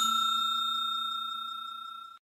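Notification-bell ding sound effect ringing out with a clear high tone and fading steadily, nearly gone by the end.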